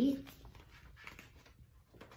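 A woman's voice trailing off in the first moment, then faint rustling and handling of a hardcover picture book over low room noise.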